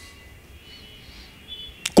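A pause in speech, leaving quiet room tone with a faint steady high-pitched whine. A click comes just before the end.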